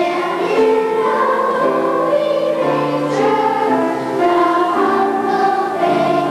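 Children's choir singing together, holding each note for about half a second to a second before moving to the next.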